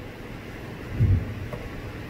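Pause in speech: steady low room noise with one short, low, muffled thump about a second in.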